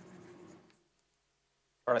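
Faint scratching of writing on a lecture board, dying away within the first second.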